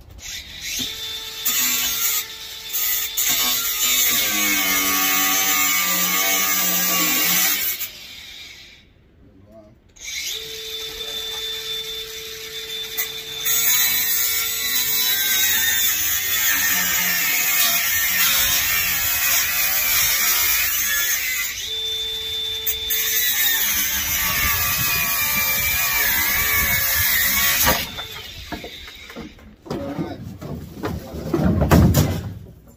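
A power grinder grinding through steel bolts, with a steady motor whine under the grinding noise. It runs for about seven seconds, stops for about two, then grinds on for most of the rest before stopping shortly before the end.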